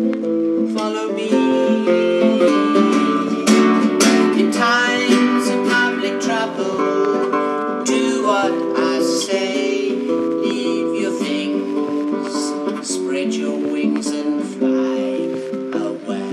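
Instrumental break: a nylon-string classical guitar strummed steadily under a harmonica playing sustained melodic notes.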